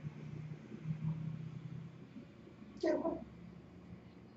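A single short, high-pitched vocal call about three seconds in, meow-like in character.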